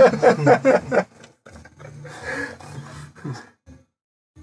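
Men laughing in quick pulses for about the first second after a joke, then fainter voices and small noises in a small cabin.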